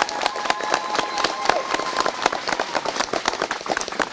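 A crowd clapping, many hands beating irregularly and without a pause. A steady high-pitched tone is held over the clapping for about the first three seconds.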